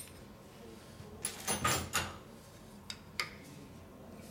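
Metal door lever-handle parts being handled and adjusted: a click, a scraping rattle a little over a second in, then two sharp clicks near the end.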